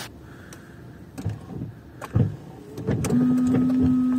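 Ford Fusion windscreen wipers running on new Bosch Aerotwin frameless blades, sweeping the glass with a few dull knocks, cleanly and with little noise. A steady electric motor hum sounds for about a second near the end.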